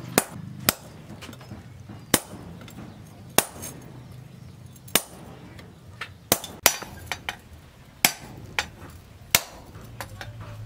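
Hand hammer striking a steel punch to drive holes through the hot tang of a forged steel machete blade on an anvil: about a dozen sharp metallic strikes at uneven intervals, with a quick run of several a little after the middle.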